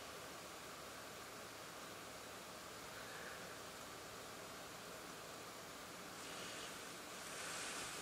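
Faint, steady hiss of a quiet car interior: recording noise with no distinct event. Two soft swells of hiss come about six and seven seconds in.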